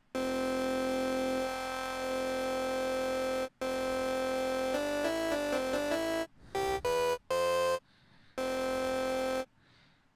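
Sampled synth tone played from a software sampler's on-screen keyboard: a long held note, a short break, another held note with a quick run of changing pitches, three short notes, then a last held note. The sample is being auditioned while its tuning is worked out, and it has a lot of bass.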